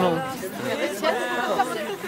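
Only speech: people talking casually.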